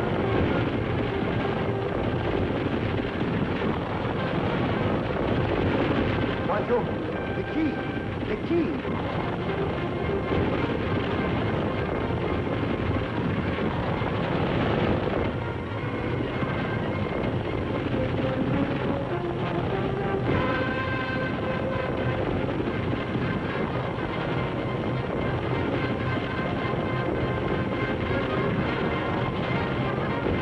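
Background music over the continuous rumble of a galloping horse team pulling a wagon.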